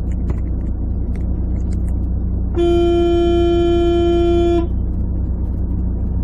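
A vehicle horn sounds one steady single-tone blast about two seconds long, partway through, over the steady low engine and road rumble of the vehicle carrying the dashcam.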